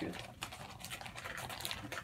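Plastic zip-top bag of soft-plastic fishing baits crinkling with a run of small, irregular crackles as it is handled and pulled open.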